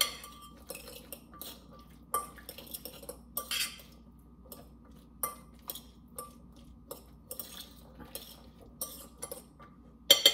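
A metal utensil stirring a chickpea mixture in a glass bowl, with irregular clinks and scrapes against the glass.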